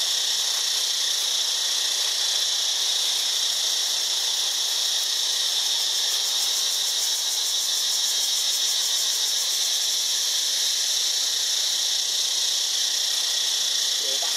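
A steady, high-pitched chorus of forest insects droning without a break.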